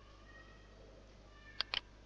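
Two sharp clicks close together about a second and a half in, a computer mouse button pressed and released, over a low steady hum.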